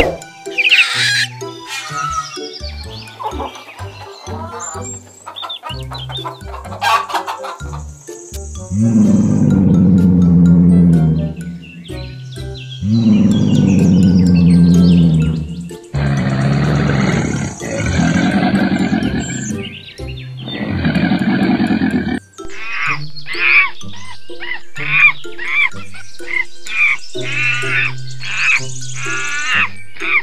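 A string of different animal calls laid over background music with a steady low beat. Long, loud low calls come in the middle, and a quick run of repeated higher calls comes near the end.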